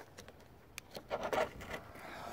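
Scattered light clicks and rustling handling noise, with a short burst of it a little past the middle.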